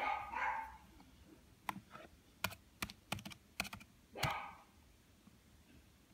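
Laptop keyboard keys being pressed: about eight separate clicks, a word typed and sent. Two short, louder noises of unclear source, one right at the start and one about four seconds in, stand out above the clicks.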